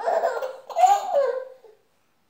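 A baby laughing in two short bursts.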